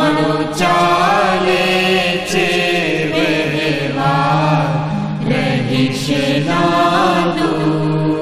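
Devotional bhajan sung in Gujarati, with a steady low drone held underneath and a few sharp percussive strikes.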